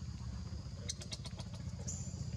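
An engine running steadily at idle, a low fluttering rumble, with a steady high insect drone over it and a quick run of sharp clicks about a second in.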